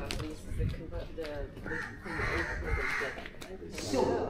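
Crows cawing, a few hoarse calls in quick succession about halfway through, over faint background voices.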